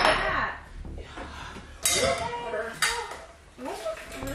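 Dishes and glassware being handled: three sharp clinks or knocks, roughly a second apart, each ringing briefly.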